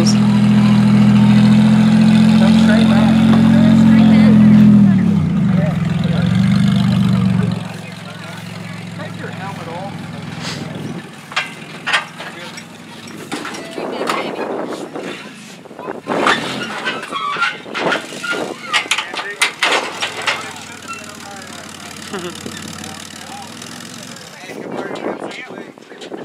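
A vehicle engine idling steadily, its pitch sagging about five seconds in before it shuts off a couple of seconds later. Through the rest, a string of irregular sharp knocks and clanks.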